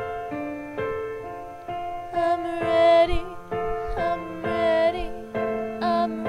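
Piano accompaniment playing a steady pattern of chords. About two seconds in, a female voice comes in, singing long held notes with vibrato without clear words.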